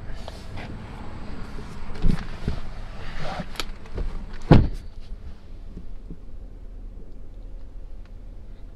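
Rustling and handling noise with several short knocks and one louder low thump about four and a half seconds in, from someone moving about inside a pickup truck's cab.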